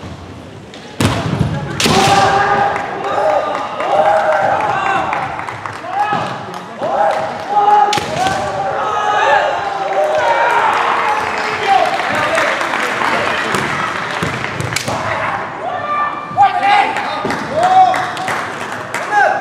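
Kendo players' kiai: long, drawn-out high yells, with sharp impacts of bamboo shinai strikes and stamping feet on the gym floor about one and two seconds in, near eight seconds and near fifteen seconds.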